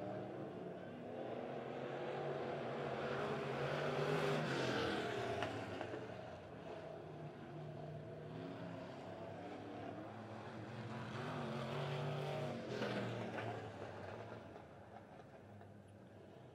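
Dirt-track super stock race cars circling the track after the checkered flag, their engines swelling twice as the cars come by, about 4 seconds in and again about 12 seconds in, then fading toward the end.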